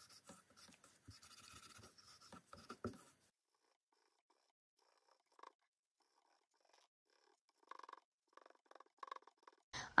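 Faint rubbing and scratching of a wipe over painted paper strips, lifting off dried paint. It stops about three seconds in, leaving near silence with a few faint soft sounds.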